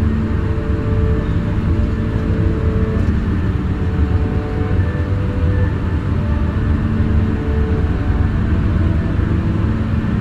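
A car driving at steady speed: a constant low rumble of engine and road noise.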